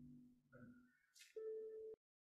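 Background music fading out, then a single steady electronic beep, like a telephone busy tone, lasting about half a second and cutting off suddenly.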